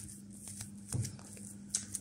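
A fork stirring and mashing soft ricotta, grated parmesan and eggplant pulp in a ceramic bowl: quiet, soft scraping with a few faint clicks of the fork against the bowl.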